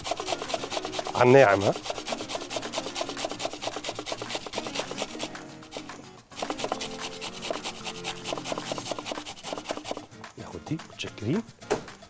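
Cucumber being grated on a stainless-steel box grater: quick, even rasping strokes, with a short break about six seconds in.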